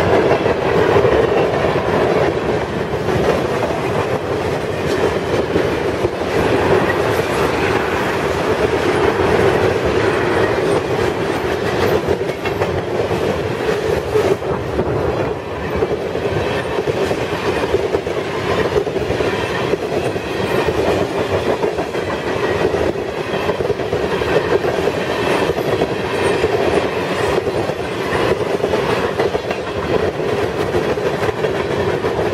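Freight cars of a long train rolling past close by: a steady rumble of steel wheels on rail, broken by repeated clicks and clacks as the wheels cross rail joints.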